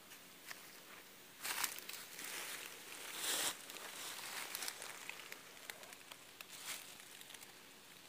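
Dry dead leaves and debris rustling and crunching as someone moves into the leaf-lined bed of a debris hut, with two louder crunches about a second and a half and about three seconds in.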